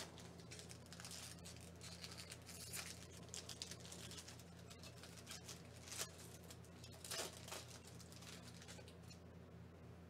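Foil wrapper of a trading-card pack being torn and crinkled open by hand: faint, irregular crackling with a few sharper rips, over a steady low electrical hum.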